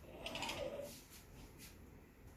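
A brief scratchy scrape with small clicks, peaking about half a second in, from a thin stick dragged through wet paint along the edge of a canvas.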